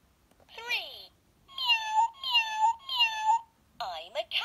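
Electronic toy bus's sound chip: a short falling voice sound, then three identical recorded cat meows in a row, each falling and then rising in pitch, played through the toy's small speaker after its third animal button is pressed.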